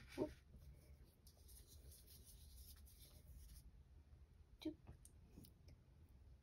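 Near silence, with faint light scraping and two soft knocks, one just after the start and one a little before the end, as oil paint is handled on a palette.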